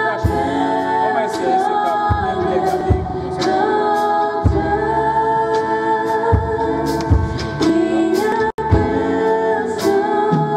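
Two women singing a French gospel worship song in harmony into microphones, over keyboard accompaniment, with long held notes. The sound drops out for an instant about eight and a half seconds in.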